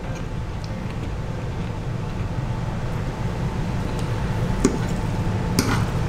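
A steady low rumble with a few faint clicks of a metal fork against a ceramic plate, and a short scrape near the end.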